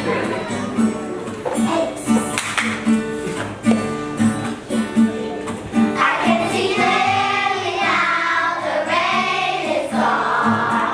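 Children's choir singing over an instrumental accompaniment that keeps a steady beat; the voices come in strongly about six seconds in.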